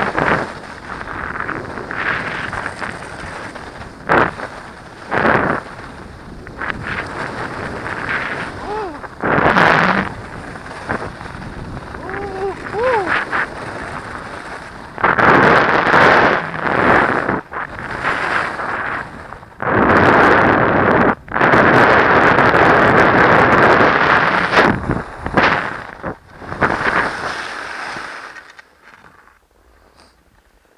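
Wind rushing over the microphone of a goggle-mounted camera on a downhill ski run, with skis scraping packed snow; it surges louder in long stretches as speed builds, then dies away near the end as the skier slows to a stop.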